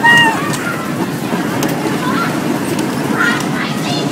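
A short, high-pitched laughing call right at the start. After it comes steady background hubbub with a few faint, brief voices.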